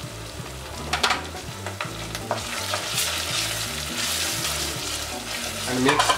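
Sliced onions and cumin seeds sizzling in hot soybean oil in a pot, stirred with a wooden spatula. There is a sharp scrape about a second in, and the sizzle grows fuller from about halfway.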